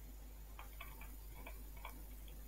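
About six faint, irregular taps and clicks of a stylus on a pen tablet as a number is handwritten.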